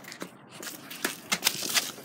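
Handling noise from a phone camera being swung about: scattered small clicks and rustling, growing louder near the end.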